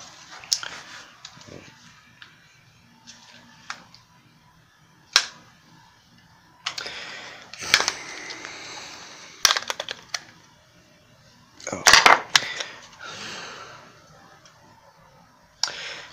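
Handling noises from a paper case being worked on: a few sharp clicks and knocks at irregular intervals, the loudest cluster about twelve seconds in, with stretches of paper-like rustling in the middle and after that cluster.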